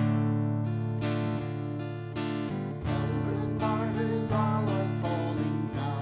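Acoustic guitar strummed in a steady rhythm, with a wavering melody line rising above it from about three seconds in.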